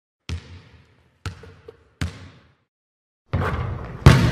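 A basketball bouncing three times, sharp single hits with the gaps shortening from about a second to under one. Near the end a steady rush of arena crowd noise cuts in.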